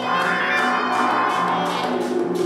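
Live band music: saxophone, conga drums and electric guitar playing together over a steady percussion beat, with a held note swelling through the middle.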